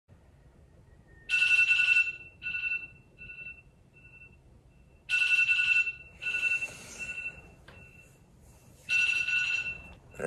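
Phone sounding a repeating electronic ringtone: a bright two-pitch tone in short bursts that fade away like echoes, the pattern starting over three times about four seconds apart.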